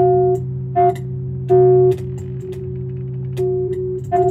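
Glitchy live-sampled electronic playback: a pitched tone with a struck attack is retriggered in short bursts that stop abruptly, several times at uneven spacing. A steady low drone runs underneath.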